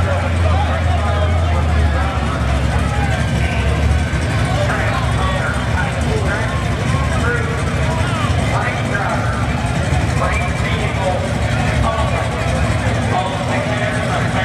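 A car's engine running with a steady low rumble, strongest in the first few seconds, under people talking.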